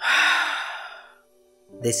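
A loud sigh from a voice actor: one breathy exhale that fades out over about a second. Speech begins near the end.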